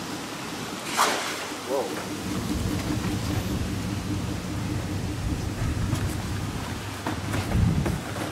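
Steady hiss and low rumble of traffic on a wet street, with a sharp knock about a second in and a low thump near the end.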